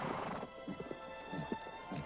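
Horses' hooves galloping in quick, uneven beats, mixed over held orchestral music in a film's soundtrack.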